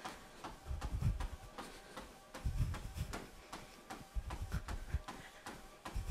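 A runner's feet striking a treadmill belt at a running pace: a soft, steady rhythm of thuds.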